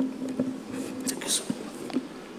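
Faint whispered speech near the microphone, with a few soft clicks.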